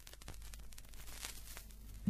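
Vinyl LP surface noise in the lead-in groove: scattered clicks and pops of record crackle over a faint low steady hum.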